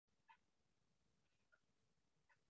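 Near silence, with a few very faint brief blips.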